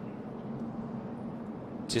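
NASCAR Xfinity Series stock cars' V8 engines running at speed, heard as a steady drone.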